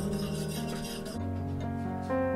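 Wire whisk scraping rapidly against the inside of a saucepan as it beats a green liquid mixture, a quick rasping swish that stops just over a second in, over background music.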